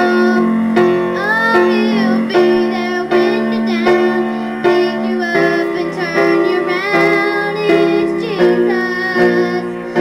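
A woman singing a song over instrumental accompaniment, holding long notes with vibrato.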